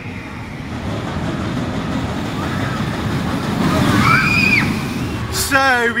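Mack double-launch steel roller coaster train running along its track: a rushing rumble that swells to its loudest about four seconds in, then a man's voice starts near the end.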